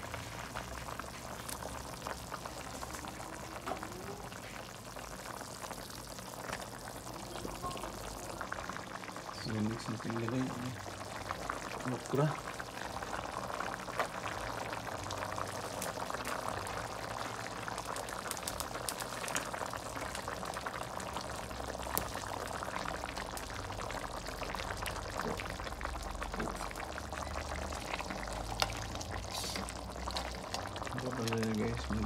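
Pork sinigang broth boiling in a metal pot: a steady bubbling with many fine crackles and pops.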